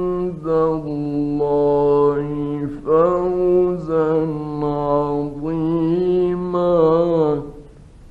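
A man's solo Quran recitation in melodic tajweed style: long held notes sliding between pitches in three or so drawn-out phrases with short breaths between, stopping about seven and a half seconds in. An old 1950s recording, leaving a faint hiss once the voice stops.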